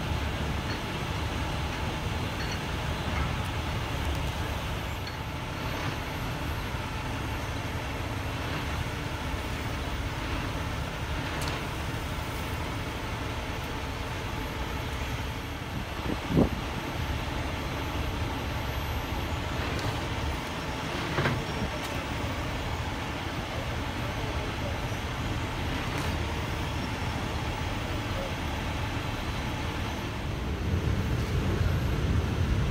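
Heavy rotator wrecker truck's diesel engine running at idle, a steady low rumble, with one short sharp sound about sixteen seconds in.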